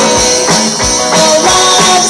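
Live rock band playing an instrumental passage between sung lines: guitars holding chords and notes over a steady drum beat.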